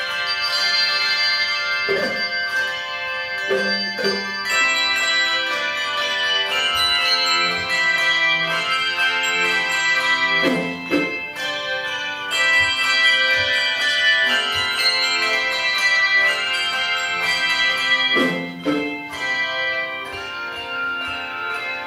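A handbell choir playing a piece: many bells sound together in chords and ring on, with a few low bells struck about two seconds in, near the middle and near the end.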